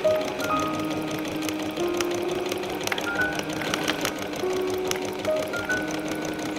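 Electric domestic sewing machine running, stitching a seam with a rapid, even clatter of needle strokes. Background music with sustained melodic notes plays over it.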